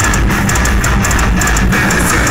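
Heavy metal band playing live: electric guitar and bass with drums, loud and dense, with a quick, steady pattern of cymbal hits.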